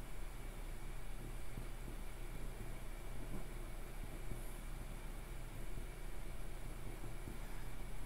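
Steady low hum and hiss of room tone, with the faint scratch of a flexible fountain-pen nib writing on paper.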